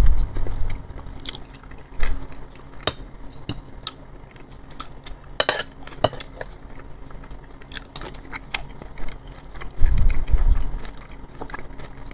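A metal fork clinking and scraping against plates of salad in short sharp clicks, with a quick cluster of clinks about five and a half seconds in, amid close-miked chewing.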